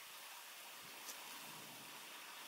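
Near silence: a faint, steady background hiss with no distinct sound in it.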